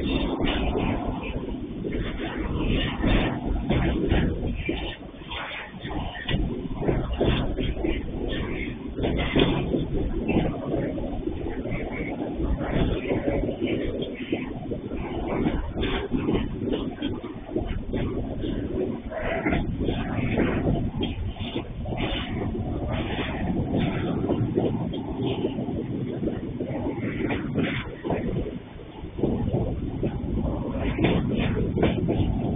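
Freight train of container flatcars rolling past close by: a continuous rumble of steel wheels on the rails, broken by frequent clanks and knocks from the wagons.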